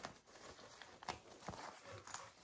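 Faint handling of a Cretacolor fabric art-supply roll being unrolled on a desk, with a few light taps and rustles as the pencils in it shift.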